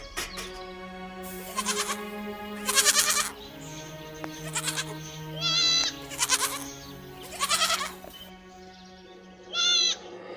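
Goats bleating repeatedly, short quavering cries over soft steady background music.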